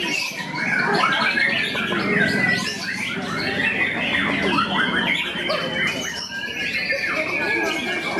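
White-rumped shamas (murai batu) singing in a songbird contest, several birds' whistled and chattering phrases overlapping, with one long, slightly falling whistle through the second half. People's voices are mixed in underneath.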